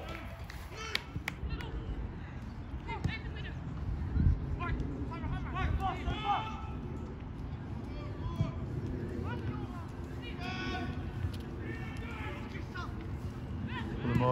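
Distant shouts and calls from football players across the pitch, over a low rumble of wind on the microphone.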